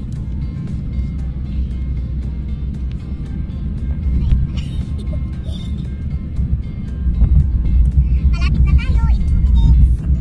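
Low, steady road and engine rumble inside a moving car, with music playing over it. A voice in the music stands out near the end.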